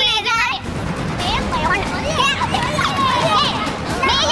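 Several people's voices talking over one another in replayed TV footage. It opens with a shrill voice, then about half a second in the sound changes abruptly to scattered voices over a noisy room background.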